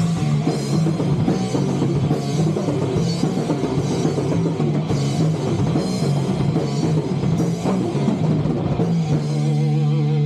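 Live rock band playing electric guitar, bass guitar and drum kit. About nine seconds in, the band stops on a single held chord that rings on, the closing chord of the song.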